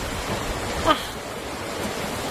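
Steady background hiss of room noise, with a short wordless vocal sound about a second in.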